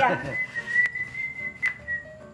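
A single high whistled note held steady for well over a second, with two short clicks during it.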